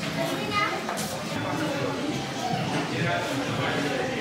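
Indistinct voices of other people talking in a large hall.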